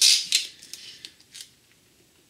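Scotch tape pulled off the roll of a small handheld dispenser: a sharp rasping peel at the start and a second, shorter one just after, then a few faint clicks as the tape and dispenser are handled, dying away by about halfway.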